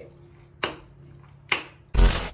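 Quiet room tone broken by two short, sharp noises about half a second and a second and a half in. Right at the end a loud burst of glitchy static sound effect cuts in.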